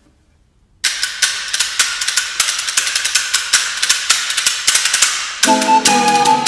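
After a short silence, wooden hand percussion starts suddenly with a rapid run of dry clicking strokes, several a second. Near the end a recorder comes in with a melody over the clicking.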